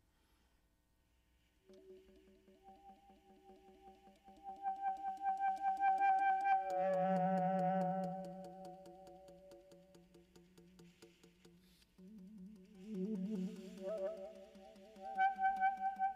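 Saxophone playing long held notes, several pitches sounding together at once, beginning after about a second and a half of near silence. The notes swell loudest about halfway through with a wavering, trilled stretch, fade away, stop briefly near the end of the second third, then come back strongly.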